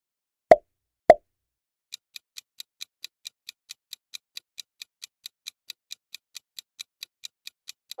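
Two short cartoon pop sound effects about half a second apart, then a quiz countdown timer ticking evenly, a little over four ticks a second, while the answer time runs down.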